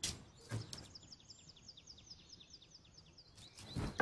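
Small bird chirping in a fast, even run of short high chirps, each sliding down in pitch, about six a second, starting about a second in. Two soft thumps in the first half second.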